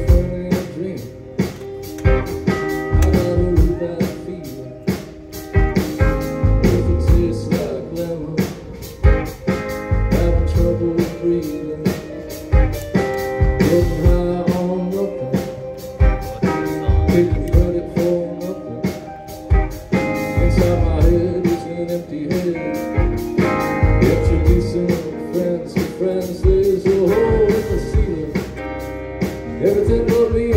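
Live rock band playing through a PA: electric and acoustic guitars, keyboard and a drum kit keeping a steady beat.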